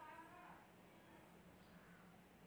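Near silence: room tone with a low steady hum, and a faint pitched sound in the first half second.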